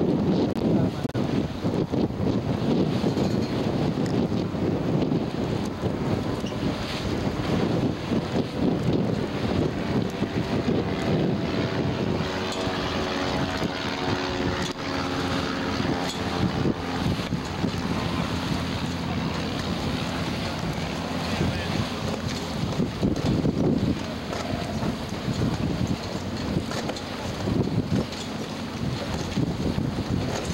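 Wind buffeting the microphone on the deck of a schooner under sail, a loud, steady rushing rumble. A faint steady hum of several tones runs through the middle stretch.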